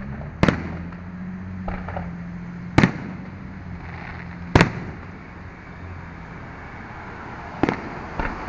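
Aerial firework shells bursting overhead: four sharp, loud bangs a couple of seconds apart, with a pair of fainter pops between the first two, over a steady low hum.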